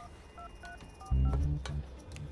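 Phone keypad tones: a quick run of about five short two-note beeps as a number is dialed on a mobile phone. About halfway through, a louder low pulsing bass sound comes in beneath them.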